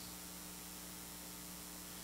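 A faint, steady electrical hum with a light hiss: mains hum in the microphone and sound system.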